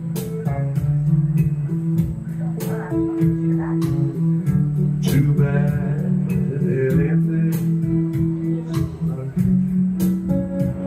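Electric guitar played live through an amplifier: an instrumental blues passage of held notes and short runs, over a steady tapping beat.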